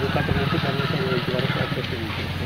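A man speaking Telugu in an outdoor interview, with a steady low hum underneath.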